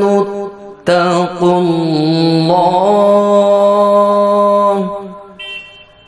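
A man reciting the Qur'an in melodic tajwid style: one long held, ornamented phrase begins about a second in after a short break and fades out about five seconds in.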